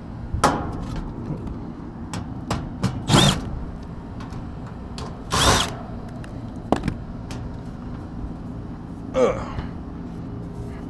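Cordless drill/driver run in a few short trigger bursts, each a brief whir that rises and falls in pitch, over a steady low hum.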